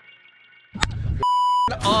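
A short, steady censor bleep, under half a second long, blanks out a word in the middle of a man's excited talk. Everything else cuts out while it sounds. Just before it, background guitar music fades out and wind and outdoor noise come in.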